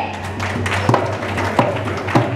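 Dholak bass strokes, two struck about a second apart, each with its pitch sliding down, over a steady low hum.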